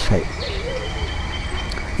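A faint, low, wavering bird call, a soft hooting or cooing, over a steady low background rumble.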